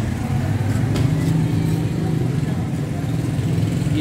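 Street traffic noise dominated by a motor vehicle engine running steadily close by, a continuous low hum.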